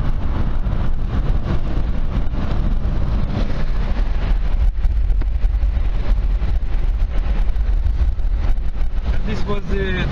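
Steady road and wind noise of a car driving at highway speed, heard from inside the car, with a deep low rumble.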